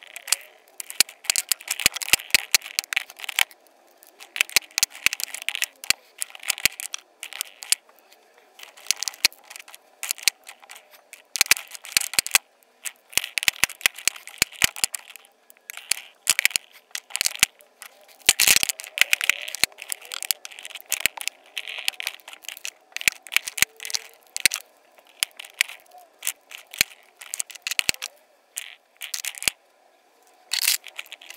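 Lipstick tubes clicking and clattering against each other and against a plastic grid drawer organiser as they are picked up and slotted into place, in irregular bursts of sharp clicks with one louder knock about 18 seconds in.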